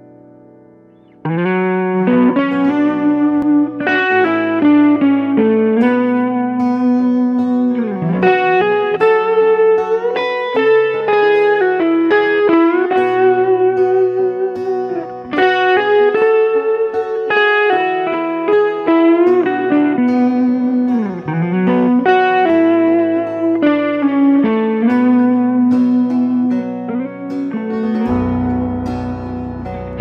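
Gibson Les Paul electric guitar played through a Kemper Profiler amp modeller: a single-note melody with string bends and vibrato. It comes in loud about a second in, after a faint ringing note, and a deep low note joins near the end.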